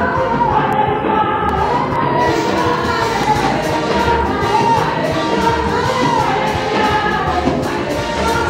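Praise and worship music: voices singing together over loud amplified music, with a steady beat coming in about two seconds in.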